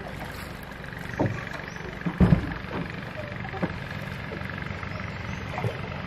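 A boat moving along a river: a steady low rumble with water and wind noise, broken by a few short knocks. The loudest knock comes about two seconds in.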